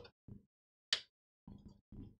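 A PC power cable and its plastic connector being handled and pushed onto a motherboard inside a computer case: a few short, quiet scrapes and knocks, the sharpest about a second in.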